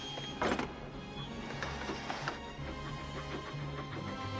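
Background film-score music with sustained low notes. A loud sudden noise cuts in about half a second in, and a lighter one comes just after two seconds.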